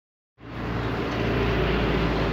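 Steady low hum of a running engine under a wash of outdoor noise, beginning abruptly about half a second in.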